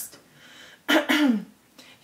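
A woman clears her throat once, briefly, about a second in.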